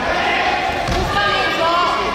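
Raised voices shouting in a large, echoing sports hall during a karate sparring bout, with a thud of feet on the foam mats about a second in.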